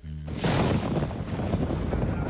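A wind-like rushing sound effect under music. A brief low tone opens it, and the rush sets in about half a second in and holds steady.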